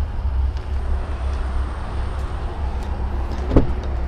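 Steady low outdoor rumble, with one sharp thump near the end as the car's door is opened.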